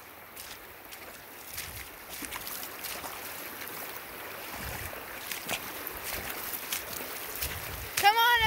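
Shallow, fast river water rushing over a gravel bed, a steady hiss, with a few low wind rumbles on the microphone and light clicks.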